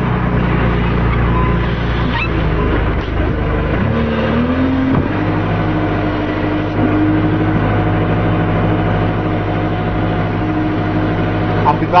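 Engine of a tractor loader used to tip horse manure into a convertible, running steadily. Its pitch rises about four seconds in and then holds higher.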